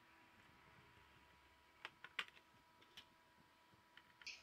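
Near silence with three faint, short clicks a little before two seconds in, just after, and at about three seconds, the middle one the loudest: a small screwdriver and fingers working on a laptop's plastic underside.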